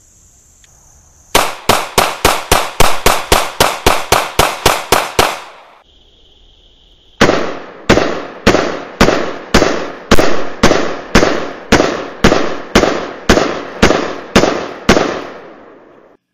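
Ruger P95 9mm semi-automatic pistol fired as fast as possible to empty the magazine: a quick string of about seventeen shots over four seconds, then, after a brief pause, a second, slower string of about sixteen shots about two a second.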